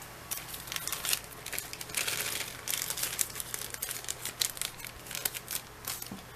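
Packaging crinkling and rustling in irregular crackly bursts as it is handled.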